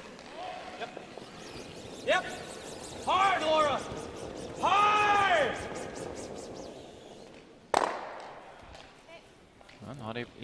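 A curling broom brushing the ice in quick strokes while a curler shouts two long sweeping calls that rise and fall in pitch. About three quarters of the way through comes a single sharp knock of granite curling stones colliding.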